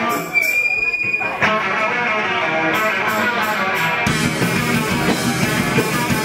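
Live punk rock band playing loud: electric guitar alone at first, with a few sharp clicks, then the drums and the rest of the band come in together about four seconds in.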